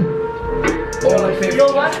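A hip-hop song playing, with a vocal line over a ticking beat.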